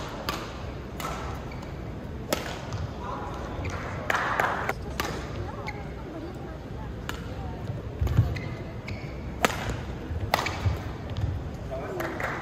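Badminton rackets striking a shuttlecock during singles rallies, sharp cracks coming irregularly a second or two apart, with players' shoes thudding on the court mat. Voices murmur in the background.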